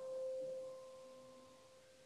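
A grand piano note ringing on and dying away as a single pure tone, fading out about a second in.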